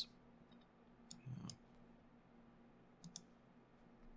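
Near silence with a few faint computer mouse clicks, about a second in and again near three seconds, the later ones in quick pairs.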